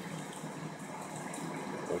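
Blower fan of an animated Halloween inflatable running, an even hiss of moving air.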